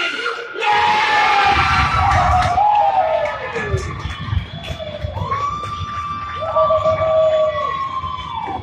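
Spectators cheering and shouting for a goal: a loud burst of cheering about a second in, then long drawn-out yells held for a couple of seconds each near the end.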